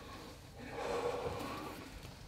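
A man breathing heavily and unsteadily from excitement, with a stronger, longer breath about halfway through, as he tries to collect himself after shooting a deer.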